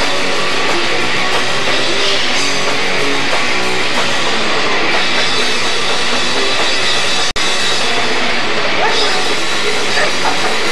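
Live band playing loud rock on electric guitars and drum kit. The recording cuts out for an instant about seven seconds in.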